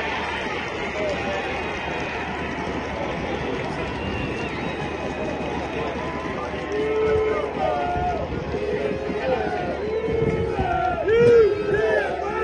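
Football crowd cheering and shouting just after a goal: a dense crowd noise holds steady, then individual shouts and yells stand out in the second half, the loudest a second before the end.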